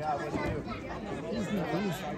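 Several people talking at once, overlapping voices with no clear words.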